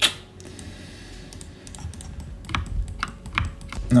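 Computer keyboard and mouse clicks: a few scattered sharp clicks, most of them bunched together in the second half, over a faint steady hum.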